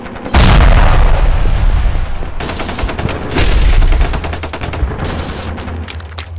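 Battle sound effects: a heavy explosion about a third of a second in and a second one about three and a half seconds in, each dying away over a second or two, over a continuous crackle of rapid rifle and machine-gun fire that thickens near the end.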